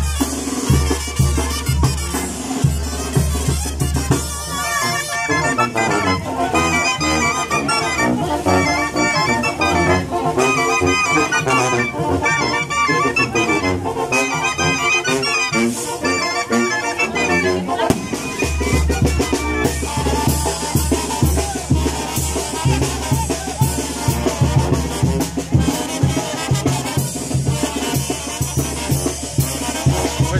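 A live Mexican brass band playing a lively tune, with a sousaphone bass pulse under clarinets and other melody instruments. The bass drops out for a stretch in the middle and comes back.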